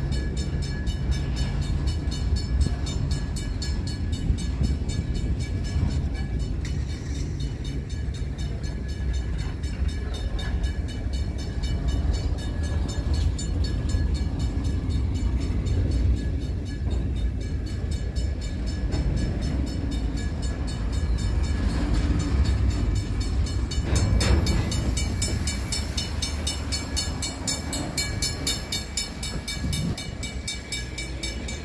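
Empty covered hopper cars of a freight train rolling past: a steady low rumble of steel wheels on the rails, easing off over the last few seconds as the end of the train goes by.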